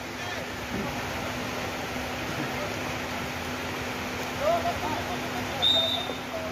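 A referee's whistle blown once, a short high blast near the end, before a free kick is taken. It sits over steady outdoor background noise with a low hum, and distant shouts about four and a half seconds in.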